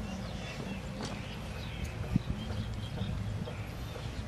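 Kitchen knife cutting slices off a firm green vegetable held in the hand over a steel bowl, making short, irregular clicks. One louder knock comes about two seconds in.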